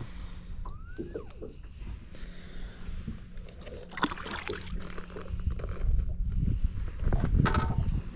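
A small largemouth bass is released over the side of a boat: clothing and handling noise on a body-worn microphone, with a sharp splash-like hit about four seconds in. A louder rumble of handling and wind follows near the end, over a steady low hum.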